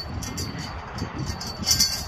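Wind rumbling on the microphone, with a few short clicks and scuffs, the loudest just before the end.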